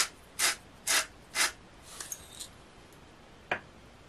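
Salt shaker shaken four times in quick succession, about twice a second, over a mixing bowl; a single short click follows near the end.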